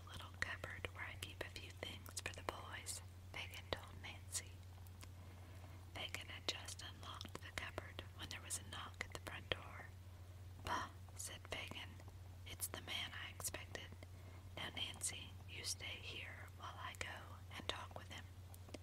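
A person reading a story aloud in a whisper, phrase by phrase, with small mouth clicks, over a steady low hum.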